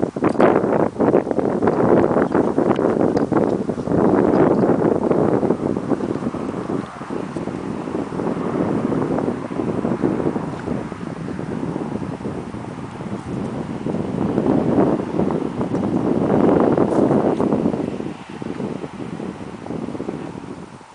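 Wind gusting across the microphone: a rushing buffet that swells strongly a couple of seconds in, again around four seconds in and about sixteen seconds in, then eases off near the end.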